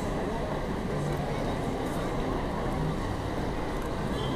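Busy street ambience: a crowd's chatter over a steady low rumble.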